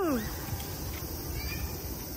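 A short vocal 'ooh' whose pitch falls steeply and trails off in the first moment, followed by faint outdoor background noise with a low rumble.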